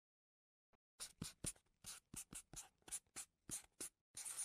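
A Snowman felt-tip marker writing on paper: faint, short scratchy strokes, about four a second, starting about a second in as letters are drawn.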